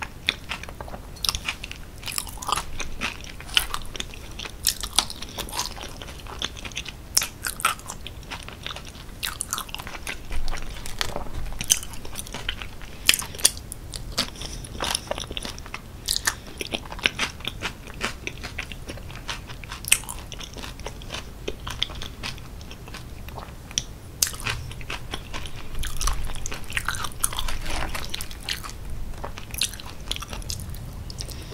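Close-miked chewing and wet mouth sounds of someone eating sauce-smothered loaded fries with grilled onions, as in an ASMR eating recording. Many irregular sharp clicks and smacks run throughout.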